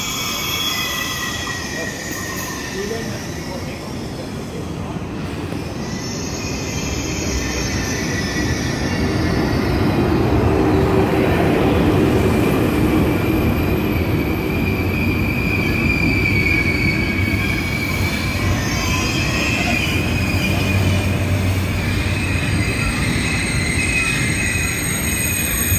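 Thalys PBA high-speed trainset arriving at a platform and rolling slowly past, its rumble growing louder until about halfway through and then holding steady. High squealing tones from the running gear sound throughout.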